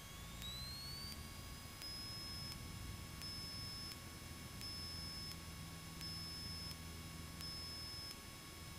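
Faint cockpit intercom audio during a Cessna 152's takeoff roll at full power: a thin electrical whine rises in pitch over about two seconds and then holds steady, over a faint low engine drone.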